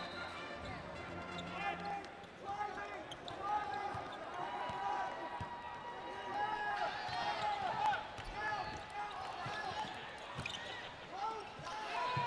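A basketball being dribbled on a hardwood court during live play, under the murmur of the arena crowd and players' voices.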